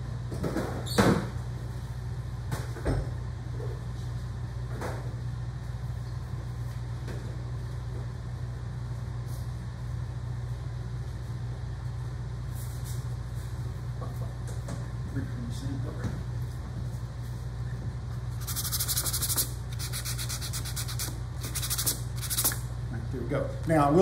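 Hand sanding with 320-grit sandpaper: several short stretches of rapid scratchy strokes about three-quarters of the way through, raising fine dust to work into the inlay's glue line. Before that, a steady low hum and a few light knocks.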